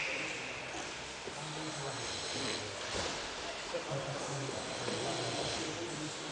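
Indistinct low men's voices, talking off and on, over the steady background noise of a large training hall.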